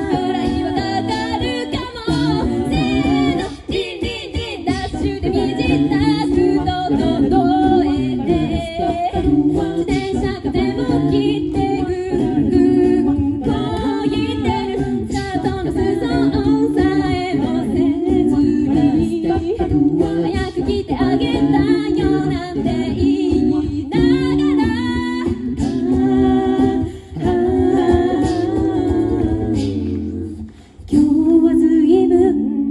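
A cappella group singing through a PA system: several voices in harmony over a sung bass line, continuous throughout, with a brief drop in level near the end.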